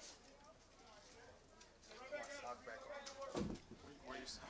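Quiet ballpark ambience: faint, distant voices come in about halfway through, with a single dull thump near the end.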